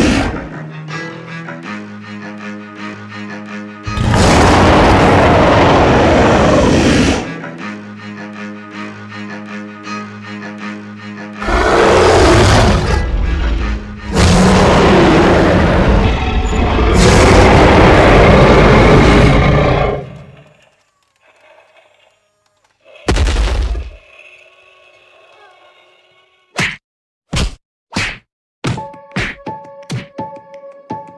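Dinosaur roars, four loud ones, the longest about six seconds, between stretches of steady background music. Near the end comes a quick run of five sharp knocks.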